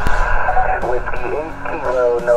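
HF transceiver speaker: a narrow band of static hiss comes on suddenly as the microphone is unkeyed, with a weak single-sideband voice calling in through the noise.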